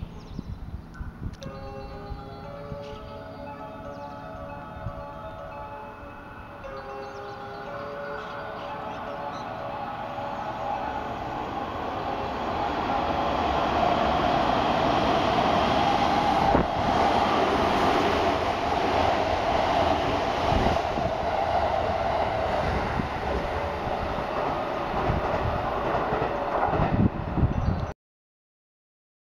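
A station chime plays a short tune. Then a JR West 207 series electric train approaches and runs through the station without stopping, its noise rising to a loud, steady rumble of wheels on rail for the last half.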